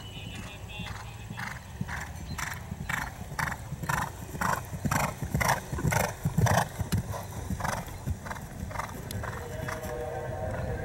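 Horse cantering on turf: rhythmic hoofbeats about two to three a second, growing louder as it passes close by in the middle and then fading.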